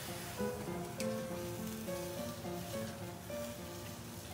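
Background music: a light melody of short notes stepping up and down in pitch, with a single sharp click about a second in.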